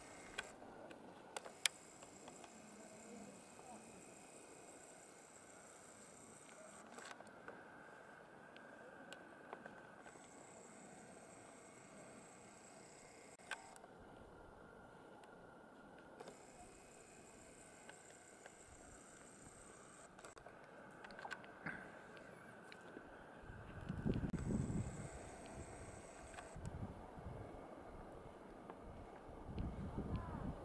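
Faint outdoor ambience: a quiet high hiss that comes and goes in stretches of a few seconds, with a few soft clicks. Near the end, wind buffets the microphone with a low rumble for about two seconds, then in smaller gusts.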